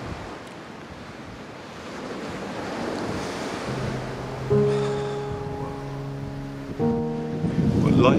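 A steady rushing noise of wind on the microphone. Background music comes in about four seconds in: a low held note, then a sustained chord struck about half a second later, and a new chord near the end.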